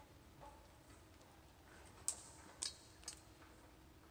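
Faint clicks and taps of a climber's hands and boots on a rickety ladder above: three sharp ticks in the second half of an otherwise quiet stretch.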